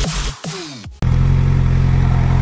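Electronic dance music with falling pitch sweeps cuts off abruptly about a second in. It gives way to a motorcycle engine idling steadily, a 2015 Suzuki GSX-R600 inline-four.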